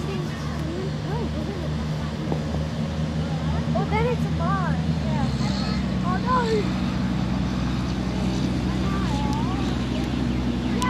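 A steady low engine hum, which shifts in pitch about halfway through, with distant voices calling out now and then.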